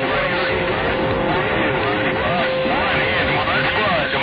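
CB radio receiver audio on 27.025 MHz: static hiss with a steady heterodyne whistle and the faint, garbled, overlapping voices of distant stations coming in over skip.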